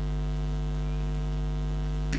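Steady electrical mains hum: a low buzz with a ladder of overtones that stays unchanged throughout.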